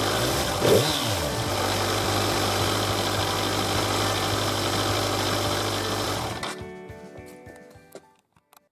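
Kawasaki Z1000 inline-four engine idling steadily under background music. The engine sound cuts off about six and a half seconds in, and the music carries on alone and fades out.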